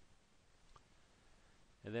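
Quiet room tone with a single faint click about a third of the way in; a man's voice starts speaking near the end.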